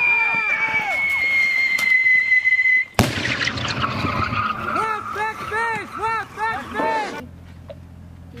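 Pyrotechnic ground burst simulator: a high whistle falling slowly in pitch for about three seconds, then a single sharp bang.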